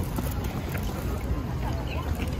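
Low rumble of wind on the microphone over outdoor crowd ambience, with faint voices of people nearby.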